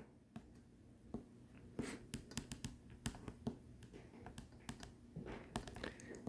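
A stylus tapping and writing on a tablet's glass screen: a run of faint, quick clicks and taps.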